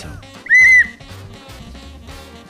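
A single short, loud whistle tone lasting about a third of a second, about half a second in, over quiet background music.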